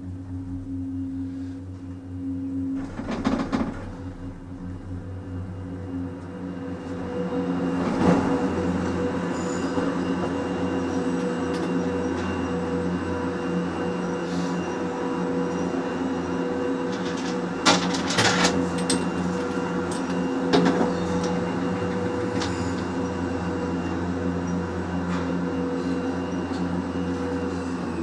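Doppelmayr detachable chondola lift (six-seat chairs and eight-seat gondolas on one rope) running through its station: a steady machine hum with several pitched tones that grows louder about seven seconds in. Sharp clacks and knocks come now and then as carriers pass through the station machinery, a cluster of them near two-thirds of the way through.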